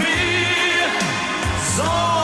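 Mid-1980s German Schlager pop song playing: a band with a gliding melody line held over sustained bass notes.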